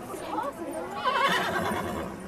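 A horse whinnying: one quavering call of about a second, starting about halfway through, over people talking nearby.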